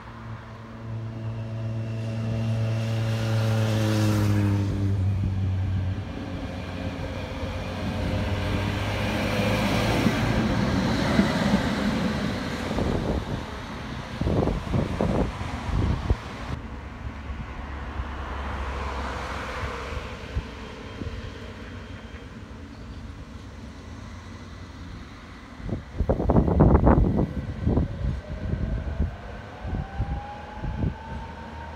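Tram and road traffic passing along a street. Early on, a pitched vehicle sound falls in pitch. Near the end, a tram pulls away with a series of loud knocks from its wheels and a rising motor whine as it accelerates.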